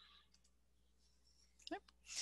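Near silence: room tone with a few faint clicks, and a short voice sound near the end.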